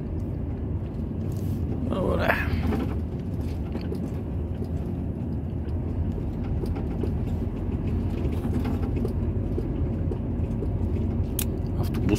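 Lorry's engine and tyres rumbling steadily, heard from inside the cab while driving slowly through town.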